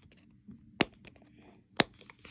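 A plastic packet being opened by hand: two sharp snaps about a second apart, with faint rustling between them.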